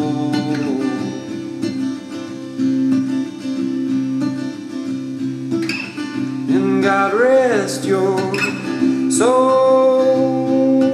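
Acoustic guitar accompaniment playing steadily, with a voice coming in about two thirds of the way through to sing a wavering phrase and then a long held note near the end.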